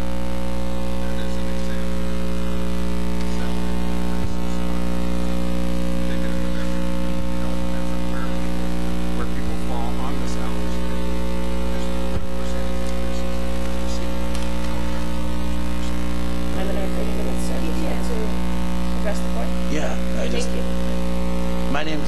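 Steady electrical mains hum on the sound system, loud and unchanging, with faint voices in the background late on.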